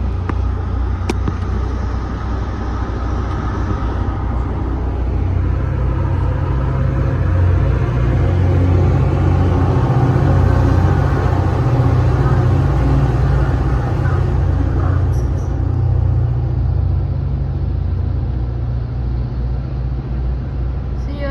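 Low, steady rumble of a Caltrain passenger train heard from inside the car, swelling in loudness through the middle.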